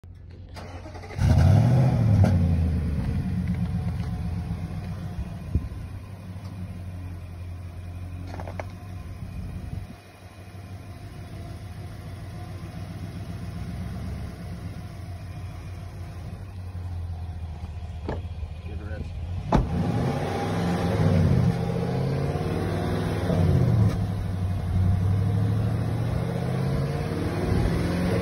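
A 2021 Nissan Titan Pro-4X's 5.6-litre V8 cold-starts about a second in, breathing through Flowmaster Super 10 mufflers on a true dual exhaust. It flares loudly at start-up, then settles to a steady idle. In the second half it is revved several times, each rev rising and falling back to idle.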